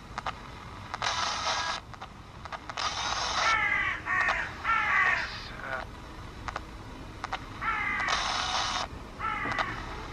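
Panasonic pocket radio modified as a Panabox ghost box, sweeping the FM band: faint clicks as it steps between frequencies, short bursts of static hiss, and clipped fragments of broadcast sound between them.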